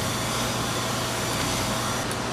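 Steady machinery noise: an even hiss over a low hum.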